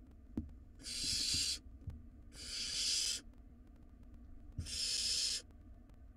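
Barn owl nestlings giving three harsh, breathy hisses, each just under a second long and about two seconds apart: the snoring-type begging call that chicks make when food is in the nest.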